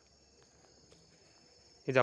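Near silence with a faint, steady high-pitched background hiss. A man's voice starts speaking near the end.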